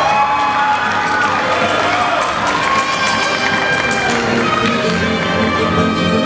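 Instrumental music playing while an audience cheers and claps; near the end the cheering fades and fuller, lower music tones take over.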